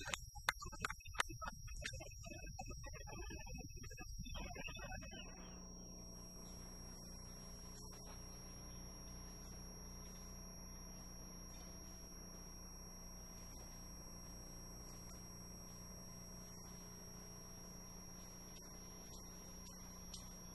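Marching band drumline playing, with drum hits and crash cymbals and some tones, until it cuts off suddenly about five seconds in. After that only a steady electrical hum with a thin high whine remains.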